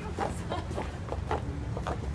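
Footsteps of several people walking in high heels on pavement: quick sharp clicks, about four a second, over a low steady rumble.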